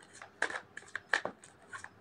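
A few soft, crisp clicks and rustles, irregularly spaced, from tarot cards being handled.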